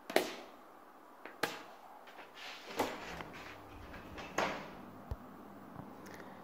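A wall light switch clicks sharply once at the start, followed by three fainter knocks and clicks about a second and a half apart and a short low thump near the end.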